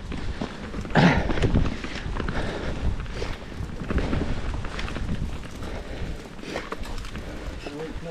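YT Jeffsy full-suspension mountain bike riding down a dirt singletrack: tyre noise over the ground with scattered clicks and rattles from the bike, under a heavy rumble of wind on the camera microphone. The noise is loudest about a second in.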